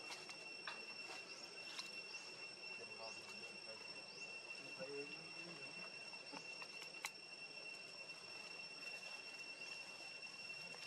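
Steady, high-pitched insect drone holding one pitch throughout, with faint short rising chirps over it and a sharp click about seven seconds in.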